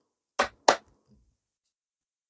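Two short knocks of plastic cosmetic containers, a body-cream tube and a spray bottle, being handled and raised, about a third of a second apart.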